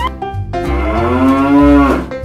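One long drawn-out moo, rising a little in pitch and then falling away at the end, over background music with a steady bass beat.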